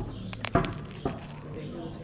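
A bite into crusty bread topped with cheese and tomato: a few sharp crunches about half a second in and another about a second in.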